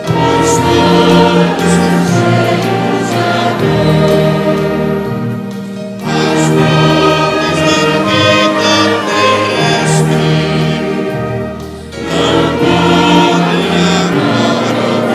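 Church orchestra of strings, woodwinds and brass playing a slow hymn in long sustained phrases, with brief breaths between phrases about six and twelve seconds in.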